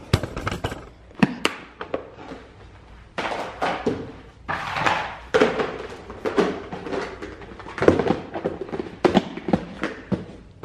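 Clear plastic storage bins and their snap-on lids being handled as a lid is taken off and swapped: an irregular string of hard plastic knocks, clicks and clatters, with some rustling in the middle.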